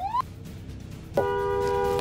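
Car horn blown and held, a steady two-note blare starting about a second in, honking at the car ahead.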